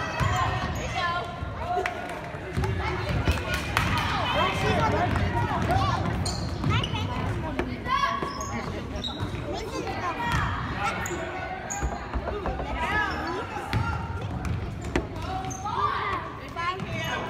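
Basketball dribbling and bouncing on a hardwood gym floor during play, with sharp knocks, over the steady chatter and shouts of spectators and players.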